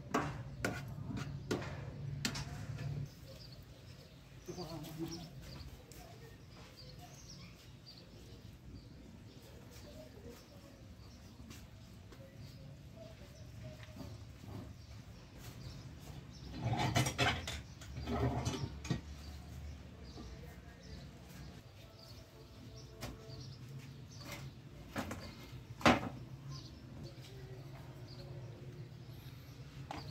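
Sparse clinks and knocks of metal spoons and pans over a quiet background. There is a louder cluster of knocks about halfway through and a single sharp knock later on.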